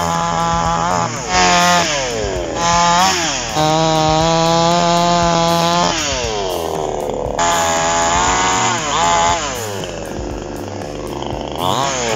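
Chinese-made 45 cc two-stroke chainsaw cutting through the trunk and branches of a felled tree. It is revved up to full throttle, held at high revs through each cut, then let drop back toward idle, several times over.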